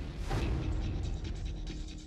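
Movie-trailer sound design: a low hit just after the start, then a rapid run of mechanical clicking over a low drone, and another hit at the very end.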